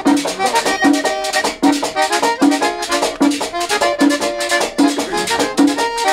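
Instrumental merengue típico played live: an accordion carries the melody over a steady tambora beat, about one low stroke every 0.8 s, with the fast scraping of a metal güira.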